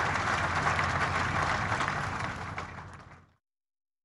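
Crowd applauding, a dense even clatter of many hands that fades and then cuts to silence about three seconds in.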